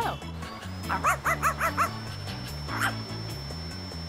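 Small dog yapping: a quick run of about five short barks about a second in and one more near the three-second mark, over background music. A thin steady high tone sounds underneath from about half a second in.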